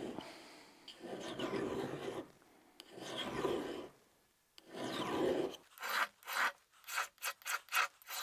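Knife blade scraping along a grooved steel honing rod in heavy-pressure edge-trailing strokes. There are three long strokes of about a second each, then quicker, shorter strokes from a little past halfway.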